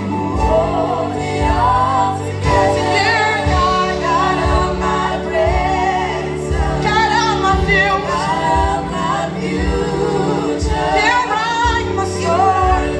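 Praise team singing a gospel worship song together in several voices over a live band, with sustained keyboard chords and a steady drum beat of about one kick a second.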